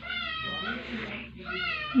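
Newborn baby crying: a short, thin, high-pitched wail, then a fainter second whimper about a second later.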